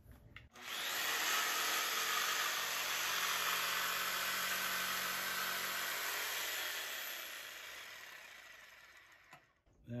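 Electric jigsaw cutting a straight kerf into a soft wood board, the first edge of a notch: the saw starts about half a second in, runs steadily through the cut, then dies away over the last few seconds.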